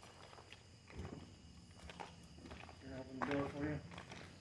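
Footsteps and scattered light clicks, with a low thud about a second in. Near the end a person's voice makes a short sound with no clear words.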